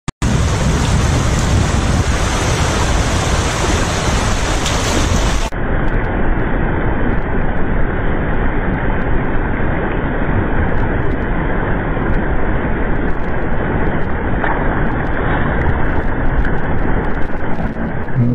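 Steady, loud rushing noise with no distinct events. It turns duller about five and a half seconds in, as the high end drops away.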